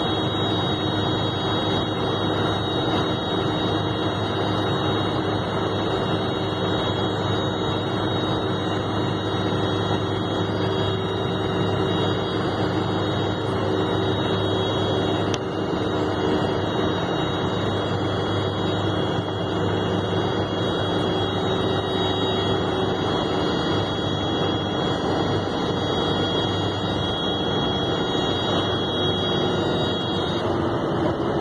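Steady drone of a vehicle travelling at speed, heard from inside: engine and road noise with a thin, steady high whine over it, unbroken throughout.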